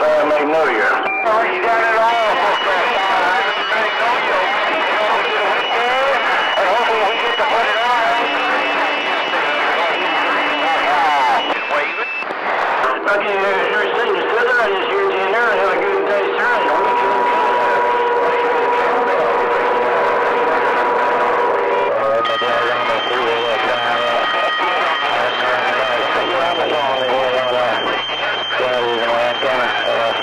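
CB radio receiver on channel 28 during skip: several distant stations transmitting over each other, so the voices come through garbled and unreadable. Steady whistles of different pitches from clashing carriers sit over the voices and change every several seconds.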